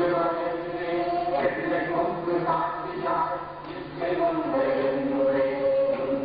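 Voices chanting a devotional chant in long held notes that change pitch every second or so.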